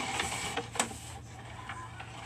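Sewer inspection camera equipment, its push cable and reel rattling and clicking as they are handled, over a steady low hum. There are a few irregular clicks, and the sharpest comes a little under a second in.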